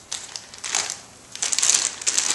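A plastic bag of baby carrots crinkling as it is handled, with a short rustle and then a louder stretch of crinkling near the end.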